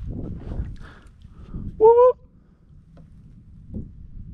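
Handling noise and light water sounds from a kayak while a freshly caught bass is held. About two seconds in comes one short, high call that rises slightly, the loudest sound here. A small tick follows near the end.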